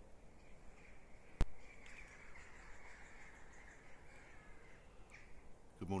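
Faint cawing of a crow for a couple of seconds, with a single sharp click about a second and a half in.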